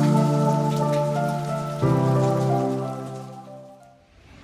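Intro background music: sustained keyboard chords that change about two seconds in and fade out near the end, over a steady high hiss.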